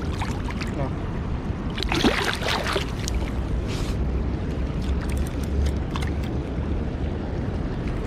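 Shallow river water splashing and lapping close to the microphone as a just-caught asp is let go, with a louder splash about two seconds in, over a steady low rumble.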